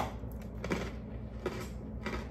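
Cranberry pistachio biscotti being bitten and chewed: a sharp crunchy snap at the start, then a few softer crunches about every three-quarters of a second.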